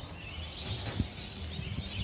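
Quiet outdoor ambience: a faint, steady high-pitched chirping in the background over a low rumble, with one soft click about a second in.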